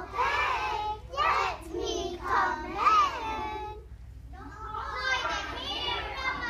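Young children's voices, delivered in short phrases, with a brief lull about four seconds in.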